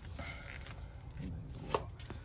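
A single sharp click about three-quarters of the way in, over a low steady rumble and faint rustling.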